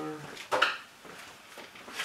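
A single short clatter about half a second in, a hand tool being picked up.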